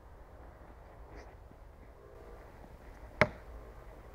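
A heavy throwing knife, the Cold Steel Perfect Balance Thrower, strikes a wooden log target once with a single sharp impact about three seconds in.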